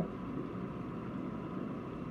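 Steady, even background rushing noise with no distinct events.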